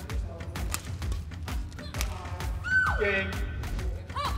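A female badminton player's squeal of delight on winning the match: one high held cry about two and a half seconds in that drops in pitch as it ends. Background music with a steady beat plays under it.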